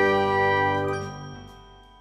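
The final chord of an intro jingle ringing out and fading away over about a second and a half.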